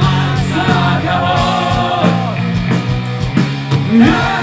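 Heavy metal band playing live through a PA: distorted guitars, bass and drum hits under a held, bending melody line.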